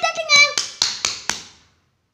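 A voice ending a word, overlapped and followed by a run of sharp taps, about four a second, that stop about a second and a half in.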